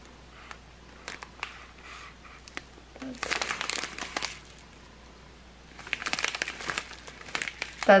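Small plastic zip bags of diamond painting drills crinkling as they are handled and turned over. Scattered light clicks come first, then two longer stretches of crinkling about three and six seconds in.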